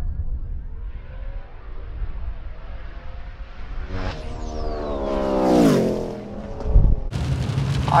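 Turbocharged drag race car's engine climbing in pitch, then dropping away sharply, with a thin whistle falling in pitch as it goes. A sharp thump follows near the end, then a steady low engine hum.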